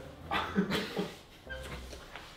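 A person's brief wordless vocal sound, a muffled laugh, about half a second in, followed by quiet room noise.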